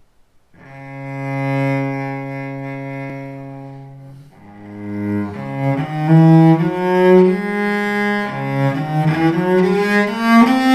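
Solo cello played with the bow, improvising: a long low note starts about half a second in, swells and fades over about four seconds, then a run of shorter notes climbs in pitch and grows louder.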